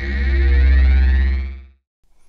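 Synthesized logo sting: a deep bass drone under layered tones that glide upward. It swells and then fades out shortly before the end.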